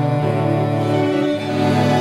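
A double string quartet (violins, violas and two cellos) playing sustained bowed chords, the low cello notes moving to new pitches twice.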